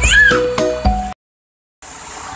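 Background music with plucked notes and a bass line, with a single cat meow over it just after the start. The music cuts off suddenly about a second in, and after a brief silence rushing water from the small falls comes in near the end.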